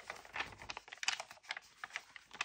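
Paper pages of a hardcover lined-notebook sketchbook being handled and turned by hand: an irregular run of small crisp ticks and rustles.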